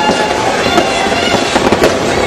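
Ground fountain firework spraying sparks: a steady, loud rushing noise thick with crackles, with a few sharper pops, one near the end.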